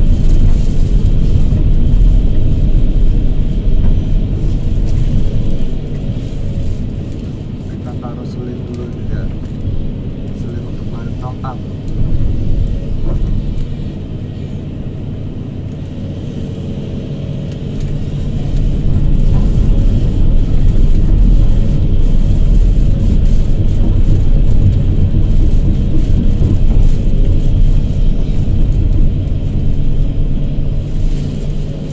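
Hydraulic excavator's diesel engine running under the operator's seat, heard from inside the cab as the arm and bucket are worked; it drops to a lower, quieter note for about ten seconds in the middle and rises again to full level a little past halfway.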